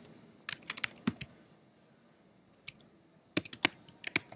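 Computer keyboard keys clicking in three short bursts of typing, each a quick run of sharp taps.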